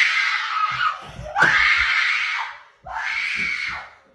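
A person screaming: three long, loud, high-pitched screams one after another, the first already under way and ending about a second in.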